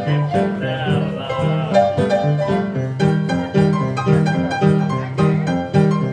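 Upright piano played in stride style: a left hand of bass notes and chords on a steady swing beat under a right-hand melody.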